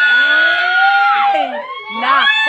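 Several people letting out loud, drawn-out, high-pitched squeals at once. One voice is held steady for over a second, and more start again near the end.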